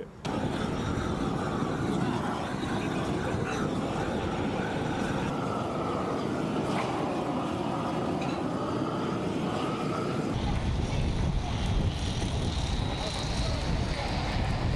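Propane roofing torch burning steadily, a rushing hiss, while torch-on bitumen roofing membrane is heated and unrolled. About ten seconds in this gives way to general construction-site noise with a heavier low rumble of machinery.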